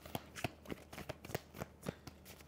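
A deck of tarot cards being shuffled by hand: a quiet run of short, irregular card clicks, about eight in two seconds.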